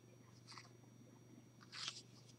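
Near silence, with a faint brief rustle near the end: a card being slid off the top of a deck of oracle cards.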